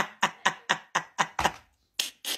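A steady run of sharp strikes, about four a second, that stops about a second and a half in.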